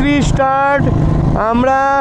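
A person's voice, pitched and drawn out like speaking or singing, over the steady running of a motorcycle at cruising speed; the engine hum and wind noise come through on their own in a short pause about a second in.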